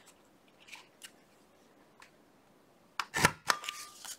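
Pocket punch board's plastic punch pressed down, cutting a notch into a paper-covered playing card: a sharp snap about three seconds in, then a few lighter clicks as the card is handled and pulled out. Only faint handling ticks come before it.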